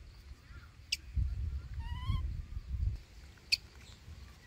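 A short rising animal call about halfway through, over a low rumbling noise, with a couple of sharp clicks.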